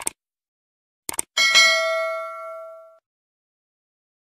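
Subscribe-button animation sound effects: a short mouse click, a quick double click about a second in, then a notification bell ding that rings out and fades over about a second and a half.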